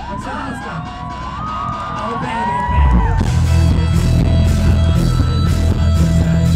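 Live rock band playing to a cheering crowd. Over a sparse passage, many voices yell and whoop; about three seconds in, the full band comes back in loud, with heavy drums, bass and guitars.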